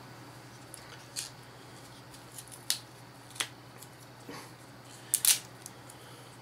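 Hard plastic toy capsule parts and packaging being handled: a few scattered light clicks and taps, the loudest two close together about five seconds in.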